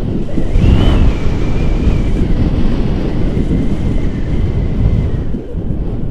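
Airflow of a paraglider in flight buffeting the camera microphone: a loud, steady wind rumble. A thin, wavering high whistle rides over it, rising and falling about a second in and fading out about five seconds in.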